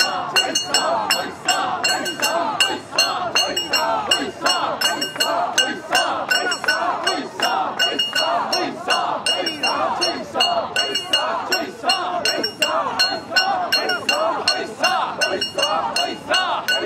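Mikoshi bearers chanting in unison while the metal rings and fittings of the portable shrine jangle and clink in a steady rhythm, a few strikes a second, as the shrine is bounced on their shoulders.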